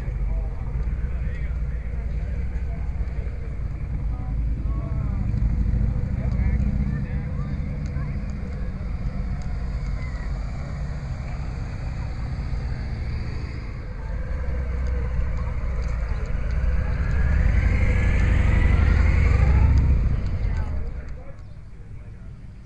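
Wind rumbling on an action camera's microphone outdoors, with faint voices of people around. A vehicle engine passes near the end, growing louder and falling in pitch before fading.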